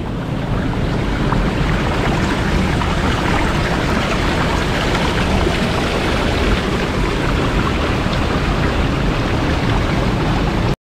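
Steady rushing of river water pouring through a narrow rock channel at a low waterfall.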